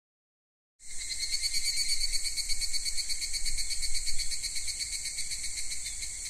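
Insects chirring steadily at a high pitch with a fast, fine pulse, used as the opening sound effect of a future bass track. It starts about a second in, over a faint low rumble.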